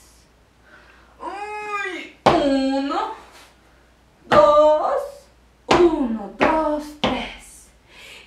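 A woman's voice making about five long, weary-sounding vocal sounds, groans and drawn-out syllables, in an acted tired manner. The first one rises and then falls in pitch.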